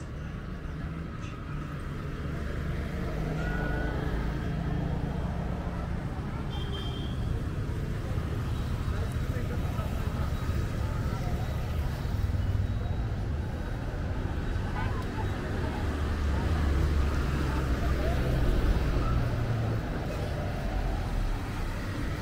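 Street ambience of road traffic: a steady low engine and tyre rumble from passing vehicles, swelling loudest about two-thirds of the way through, with indistinct voices in the background.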